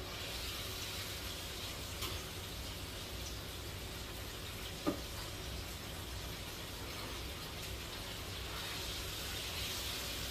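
Food sizzling in a frying pan on a gas stove, a steady hiss, with a light clink about two seconds in and a short knock near five seconds.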